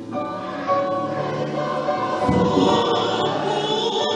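Large mixed choir singing sustained chords, growing louder a little under a second in.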